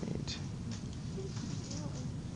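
Classroom background noise: a steady low hum with faint, indistinct voices and a few light clicks or rustles.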